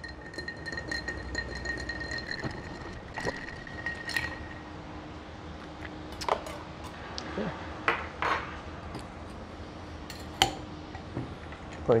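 A long bar spoon stirring a cocktail in a glass mixing glass: a quick run of light clinks with a faint ringing from the glass for the first four seconds or so. After that come a few separate clinks and knocks of glassware and bar tools being handled.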